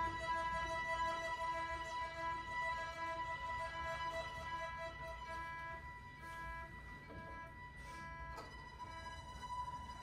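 Small chamber ensemble with violins playing softly: a repeated figure of short notes, about two a second, over one held high note, growing gradually quieter.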